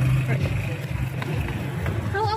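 A steady low engine hum that holds one pitch, loudest in the first half, with indistinct voices over it.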